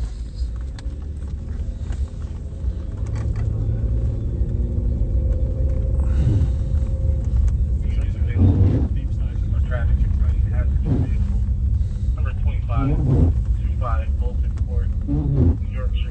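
Low engine and road rumble heard from inside a moving police car's cabin, the engine note climbing a few seconds in as the car picks up speed. Muffled voices come in from about halfway.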